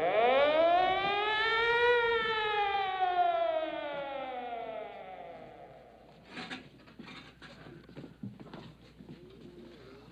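Motor-driven siren winding up in pitch for about two seconds, then slowly winding down and fading over the next four, signalling that the contestants' rest break is over. Scattered knocks and clatter follow.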